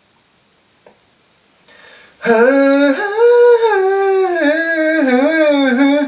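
Near silence for about two seconds, then a man humming a slow melody in long held notes that waver and slide in pitch.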